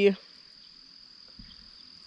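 Faint steady high-pitched insect song, a single unbroken tone that holds level throughout, heard in the open air of a tea field.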